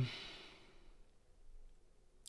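A person's soft exhale, like a sigh, fading out within the first second, then faint room tone.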